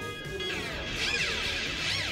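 GeoShred app's physically modelled electric guitar playing a sustained note with guitar feedback. About half a second in, high feedback tones begin sweeping up and down in arcs.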